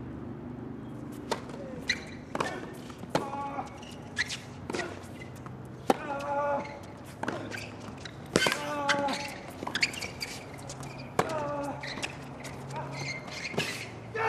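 Tennis racquets striking the ball back and forth in a long baseline rally on a hard court, about one crisp hit every half second to second, with short grunts from the players on some strokes.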